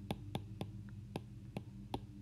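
Stylus tapping and clicking against a tablet screen during handwriting: about six sharp, irregularly spaced taps over a low steady hum.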